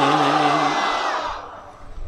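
A man's voice through a public-address system holding a long, drawn-out chanted note, which breaks off under a second in. A wash of hiss-like noise and echo trails after it and dies away over the next second.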